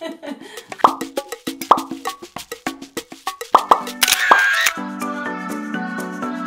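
Editing sound effects: a quick run of clicks and short plopping pops, a swish about four seconds in, then a bright music jingle that carries on to the end.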